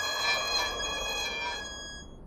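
Cartoon squeak of a small robot's unoiled wheel as it rolls: one long, steady, high-pitched squeal that fades near the end. It is the sign of a dry wheel that needs a squirt of oil.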